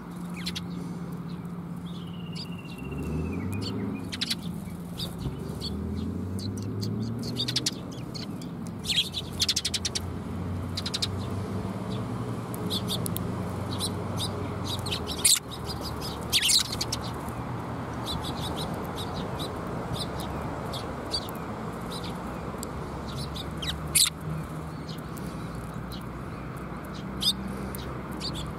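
Eurasian tree sparrows chirping: scattered short, sharp chirps, a few louder ones in quick clusters, with one drawn-out gliding call about two seconds in. A steady low hum runs underneath.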